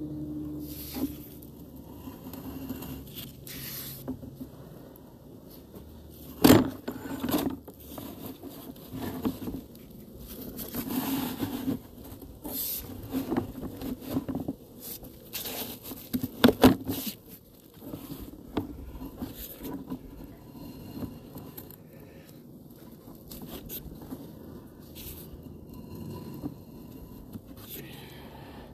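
Sewer inspection camera's push cable being fed in and pulled back by hand, making irregular scraping and rubbing with scattered clicks, and two sharp knocks about six and sixteen seconds in.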